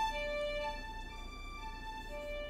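Logic Pro X Studio Strings first-violin section playing a slow legato line in D minor from MIDI, its loudness shaped by mod-wheel modulation. The held notes step between a lower and a higher pitch about every half second.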